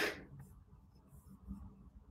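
A brief rustle right at the start, then quiet room tone with a few faint clicks.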